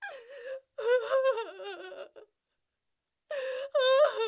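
A woman crying: high, wavering sobs with a gasping breath at the start, in two bouts with a silent pause of about a second between them.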